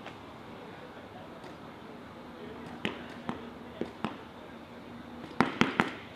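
Paintball markers firing: four single shots spaced about half a second apart around three to four seconds in, then a quick string of about half a dozen near the end.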